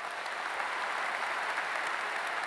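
Large audience applauding steadily at the close of a speech, thousands of hands clapping in a big indoor arena.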